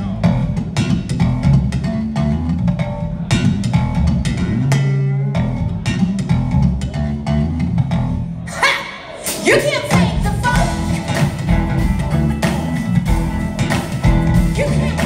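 Live funk band playing a bass-led groove on electric bass, drums and electric guitars. About eight and a half seconds in, the groove thins for a moment under a sliding, bending line, then the full band comes back in.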